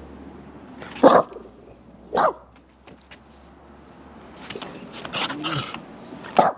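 Small long-haired dog barking: two short, sharp barks about a second apart, then a few softer barks near the end.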